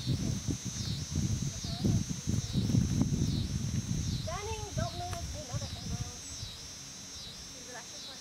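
A high insect chorus pulsing steadily, swelling and dipping a little faster than once a second. Irregular low rumbling is loudest in the first half, and a short indistinct voice sounds about halfway through.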